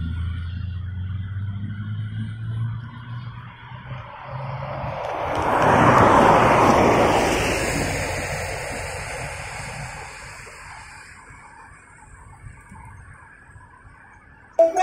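Road traffic: a low steady engine hum, then a vehicle passing close by, its noise swelling to a peak about six seconds in and fading away over the following seconds.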